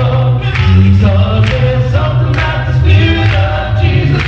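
Male a cappella gospel group singing in close harmony, a deep bass voice carrying a moving bass line under the upper voices.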